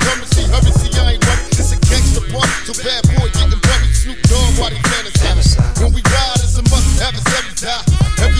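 Hip hop track: rapping over a beat with heavy bass and drums.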